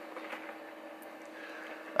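Quiet room tone: a faint steady hum with a few faint light clicks.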